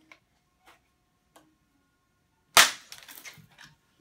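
A vinyl record snapped by hand: a few faint clicks as it is bent, then one loud sharp crack about two and a half seconds in, followed by about a second of smaller crackling as the pieces come apart.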